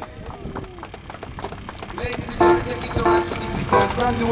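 Sparse, irregular hand claps from a street crowd just after a drum kit stops, then a man's voice from about two seconds in.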